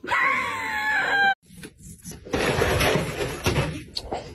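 A loud, high-pitched scream that falls in pitch, lasting just over a second and cut off suddenly. After a short gap comes a rough noise lasting about a second and a half.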